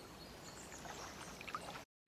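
Faint, even background ambience, a low hiss with a few soft ticks, that cuts off abruptly to dead silence near the end.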